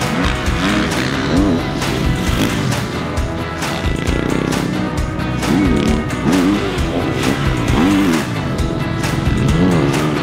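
2020 Kawasaki KX450's single-cylinder four-stroke engine revving up and dropping off again and again as the throttle is opened and shut over jumps and through corners, with background music.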